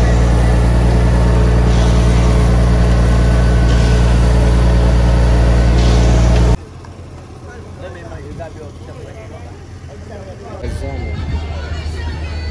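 Heavy construction machinery's diesel engine running loud and steady, cutting off abruptly about six and a half seconds in; a quieter stretch of voices follows.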